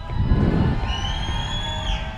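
Electronic logo sting: several synthetic tones glide upward and then hold steady, over a heavy low rumble in the first second.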